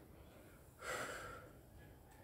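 A man's single short, breathy exhale about a second in, breathing from the effort of exercising; otherwise faint room tone.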